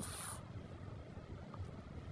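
Faint, steady hiss of a pot of chicken and pork adobo simmering.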